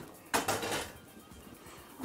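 A skillet set down on the stovetop: one short metallic clank about a third of a second in.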